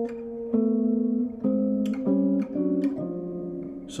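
Clean electric guitar playing a slow series of about six two-note intervals, each ringing for half a second to a second, the two voices stepping chromatically in contrary motion.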